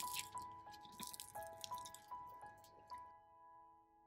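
Crisp crust of a baked Gouda choux bun crackling and tearing as it is pulled apart by hand. The crackling dies away about three seconds in. Soft, sparse piano-like music plays throughout, a new note roughly every third of a second.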